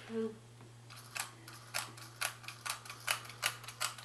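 Small plastic toy's button clicking repeatedly: short, sharp clicks, irregular, about two or three a second. The button is pressed in quick clicks rather than held down, so the toy soldier does not spin.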